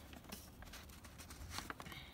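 Faint handling noises as a paper receipt is picked up and brought close to the camera: a few soft clicks and rustles, clustered near the end.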